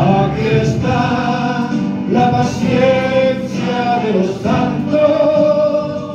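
A man singing a Spanish-language gospel hymn into a microphone over a PA, with other voices joining in, in long held notes.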